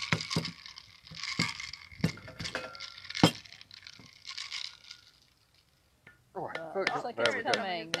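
Cocktail shaker stuck shut by a vacuum seal being knocked to break it open: a handful of sharp knocks and clinks, the loudest about three seconds in. Voices come in near the end.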